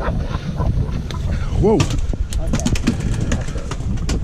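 Wind buffeting the microphone as a steady low rumble, with a run of small clicks and knocks in the middle.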